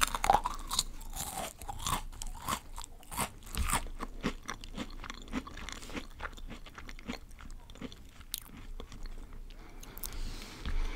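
Close-miked chewing of a crunchy snack: dense crunching in the first few seconds, thinning to sparser, softer chews later.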